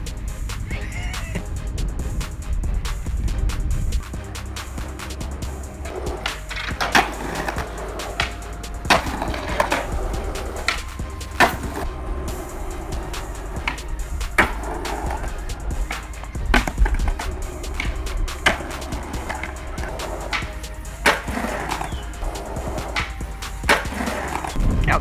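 Skateboard wheels rolling over stone paving, with a series of sharp clacks from boards being popped and landing, about a dozen standing out through the stretch.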